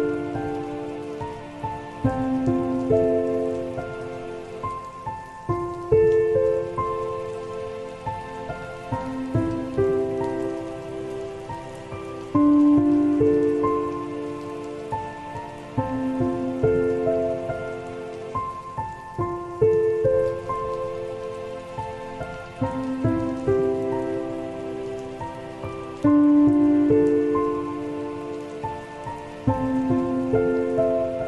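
Slow, soft solo piano playing held chords and notes, each struck roughly every two to three seconds and left to ring and fade, over a steady bed of rain sounds.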